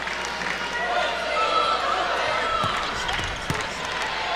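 A basketball bouncing on a hardwood court, with several sharp impacts in the second half, over the chatter and voices of an arena crowd.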